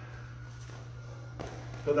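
Steady low hum of a gym room with one soft tap about one and a half seconds in, a bare foot stepping on the mat during shadow boxing; a man starts speaking at the very end.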